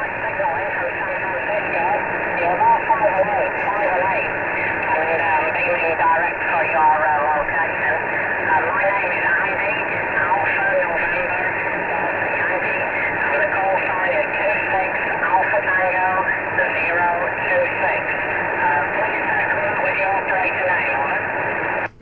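A man's voice from a distant 11-metre CB station in England, received by long-distance skip and heard through the receiver's speaker: thin and tinny, carried over a steady bed of static and hiss. The receiving operator calls the signal really good and copies all of it.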